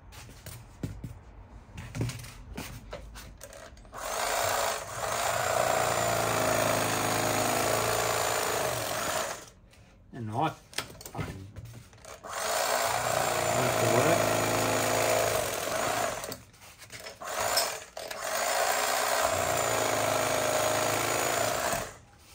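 Old electric carving knife running in three bursts of about four to five seconds each: a steady motor hum as its reciprocating blades saw through a foam pool noodle. Light handling clicks come before and between the cuts.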